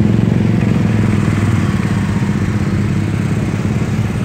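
Vehicle engines idling in stalled traffic close by, a steady low hum.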